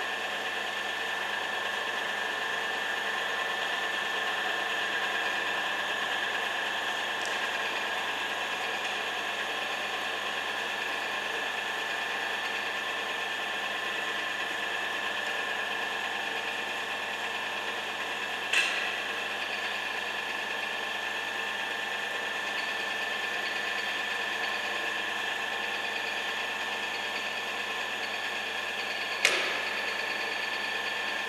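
WMW Heckert BS 40 pillar drill running, with a steady mechanical hum and a high, even whine. Two sharp clicks cut through it, one a little past halfway and one near the end.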